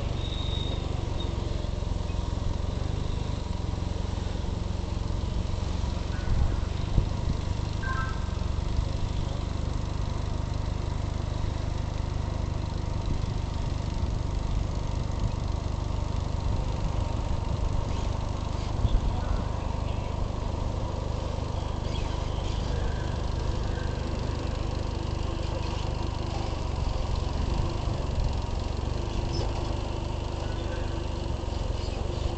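Steady low mechanical rumble, like an engine running, with a few faint high chirps and a couple of brief knocks about seven and nineteen seconds in.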